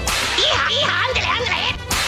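Produced transition sound effect: a sudden whip-crack at the start, then a quick run of high, wavering pitched sounds over a steady low note. Another sharp crack comes near the end.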